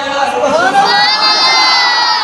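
A loud, drawn-out call from a crowd of voices in unison, its pitch rising about half a second in and then held steady for over a second.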